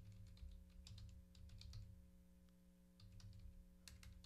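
Faint keystrokes on a computer keyboard typing a web address, in two runs of clicks with a short pause between them, over a low steady hum.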